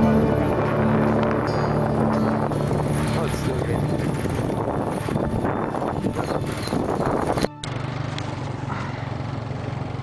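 Small motorbike engine running, with wind noise over the microphone and background music fading out in the first couple of seconds. About seven and a half seconds in the sound cuts off abruptly, then a steady low engine hum continues.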